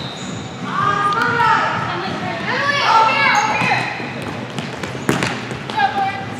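High-pitched shouting from several young players and spectators in a gym hall, loudest in the first half, then a sharp thump of the futsal ball on the hardwood court about five seconds in.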